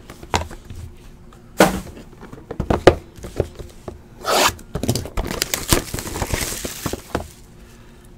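Cardboard trading-card boxes being handled: several short scrapes and light knocks of cardboard, then a longer stretch of sliding and rubbing about five to seven seconds in.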